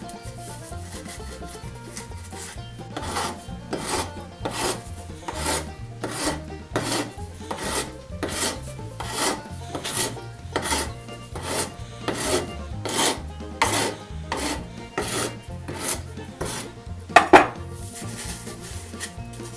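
A flat metal hand file scraping across the cut end of a PVC pipe in steady back-and-forth strokes, about four strokes every three seconds. The strokes start a few seconds in and stop near the end, followed by one sharp knock.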